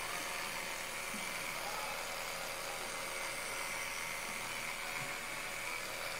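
Electric toothbrush running on its high setting while brushing teeth, a steady, even high buzz.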